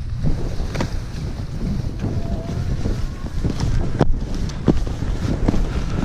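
Wind buffeting the microphone of a skier's camera during a downhill run, a steady low rumble, with the skis running over the snow and a few sharp clicks.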